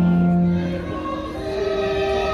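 A choir singing slowly: a long held low note stops about a second in, and higher voices carry on with wavering sustained notes.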